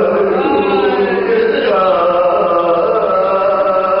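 A male voice chanting an Urdu marsiya (elegy) in soz-khwani style. The notes are drawn out and slide slowly, then settle into a long held note.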